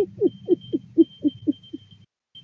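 A woman laughing hard: a run of short 'ha' pulses, about four a second, that drop in pitch and fade out near the end, with a faint steady high tone behind.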